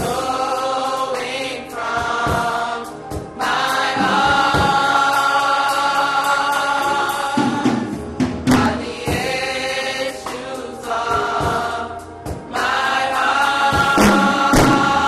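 Gospel choir singing in many voices, holding long sustained chords for several seconds at a time, with brief breaks between phrases and sharp percussive hits over the singing.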